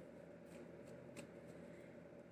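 Tarot cards being shuffled by hand, faint, with a couple of soft card flicks about half a second and a second in, over a steady low hum.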